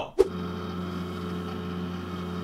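A NeXTcube computer running, its roughly 31-year-old SCSI hard drive giving a loud, steady hum over a hiss that starts suddenly just after the start. The noise is the sign of an aging drive, which the owners fear could fail at any moment.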